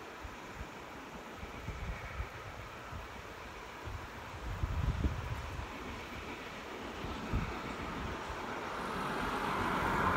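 Distant steam locomotive working hard up a steep grade, its exhaust and running noise growing louder as it approaches, strongest near the end. Irregular low rumbles of wind buffet the microphone.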